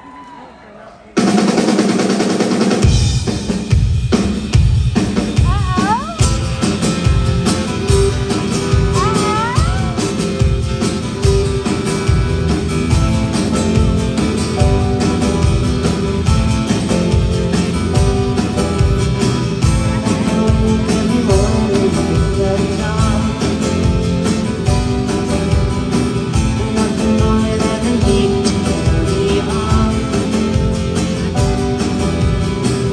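Live rock band of acoustic and electric guitars, bass, keyboards and drum kit launching into a song's instrumental intro. The band comes in suddenly about a second in, and the full drum kit joins with a steady beat about two seconds later.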